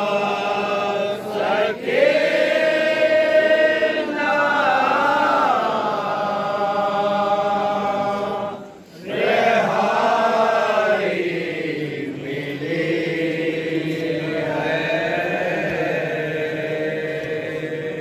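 Male voices chanting a noha, a Shia mourning lament, in long held phrases whose pitch wavers, with a brief pause about nine seconds in.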